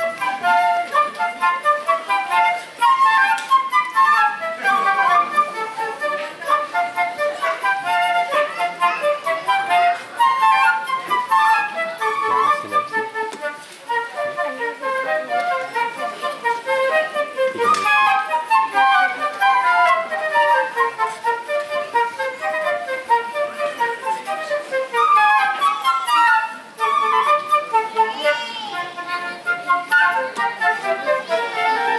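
Two concert flutes playing a duet: quick runs of short notes interweaving between the two parts.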